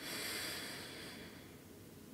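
A man taking one deep breath in through his nose, a soft hiss that fades away after about a second and a half.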